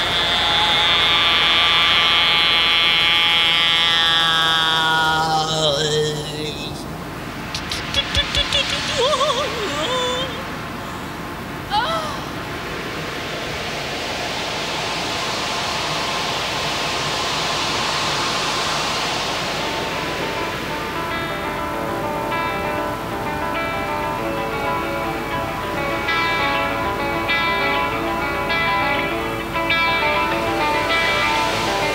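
Live rock band playing a slow, eerie song intro: high held tones sliding downward, a few clicks and warbling sounds, and a hissing swell that rises and falls. About two-thirds of the way through, a repeating instrumental figure comes in and carries on.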